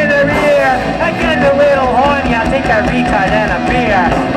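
A punk rock band playing live and loud, a voice singing over bass and drums.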